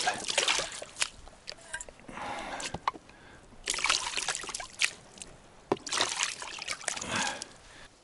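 Water poured from a plastic tub over a metal bowl and a plastic plate in several short pours, splashing and trickling onto the ground as the washed dishes are rinsed. A few sharp clicks come between the pours.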